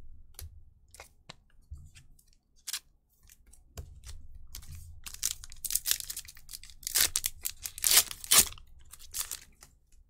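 Foil wrapper of a Pokémon booster pack crinkling and tearing as it is ripped open by hand. Scattered light rustles and clicks come first, then a dense run of crackling that is loudest a little past the middle.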